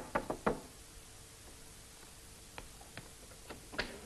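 Knocking on a wooden door, a quick run of about five knocks, then a few fainter separate clicks and taps, the last near the end as the door's latch is worked and the door opened.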